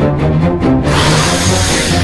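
Film score with a fast, pulsing low beat. About a second in, a loud hissing rush of noise swells in over the music and holds to the end.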